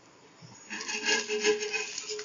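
Metal spatula scraping across a black griddle (tawa), working under the edge of a cooking pancake to loosen it, with a faint metallic ring. It starts just under a second in and is rough and loud.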